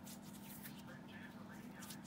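Faint soft clicks and rubbing of fingertips working a dab of eye cream over the skin, over a steady low hum.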